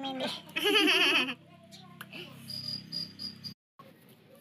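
A young child's high, wavering vocal sound without clear words for about the first second and a half, then faint room noise over a low steady hum that cuts off suddenly, leaving a brief silence.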